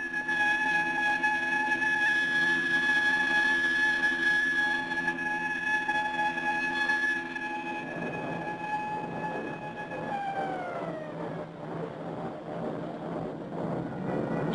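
An air-raid alarm siren holds one steady high wail, sounding the alert for enemy aircraft. About ten seconds in, its pitch falls away as it winds down, while a rushing noise builds underneath.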